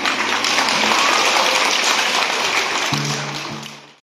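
An audience clapping, a dense even patter; about three seconds in a low steady tone joins it, and it all fades out at the end.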